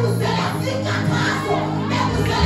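Live gospel worship music: an electronic keyboard holds sustained low chords while a congregation sings and shouts along.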